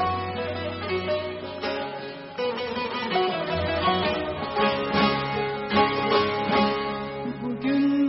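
Bağlama (long-necked Turkish saz) playing a melody of plucked notes, with a few sharp strummed strokes in the second half.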